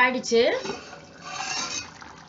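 A stainless steel plate used as a lid is lifted off a clay cooking pot, giving a metallic scrape and clink about a second in.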